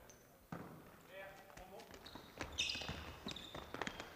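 Faint volleyball rally on a hardwood gym court: several sharp slaps of hands hitting the ball as it is attacked and dug. There is a high squeak a little before the end, and distant players' voices.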